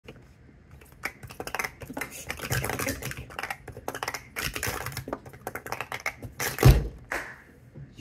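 Rapid clattering of small plastic sport-stacking cups (mini speed-stacking cups) being upstacked and downstacked at speed through a full cycle, with one loud thump about six and a half seconds in.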